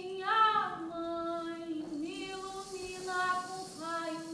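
A woman singing long held notes in a high voice, sliding slowly from one pitch to the next, with little else beneath the voice.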